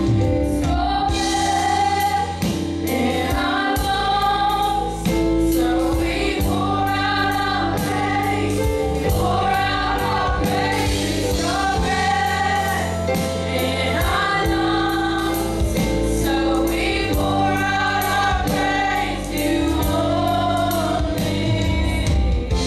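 Live gospel song: several women singing together in harmony over keyboard and drum kit, with a steady beat.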